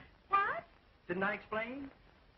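Brief wordless vocal sounds from a person: a short gliding exclamation about a third of a second in, then a longer murmur about a second in.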